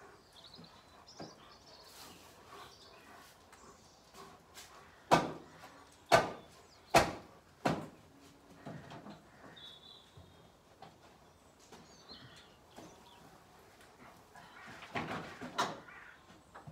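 Sharp knocks and clunks from handling at the back of a pickup truck loaded with a round straw bale: four close together about five to eight seconds in, and a cluster near the end. Birds chirp faintly in between.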